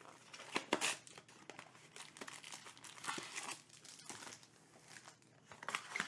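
Trading card box packaging being torn open and handled by hand: irregular crinkling and tearing of wrap and cardboard, strongest about a second in.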